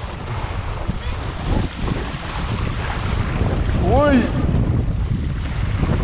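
Wind buffeting the microphone over a steady rush and splash of water along a windsurf board under sail. A short high voiced whoop comes about four seconds in.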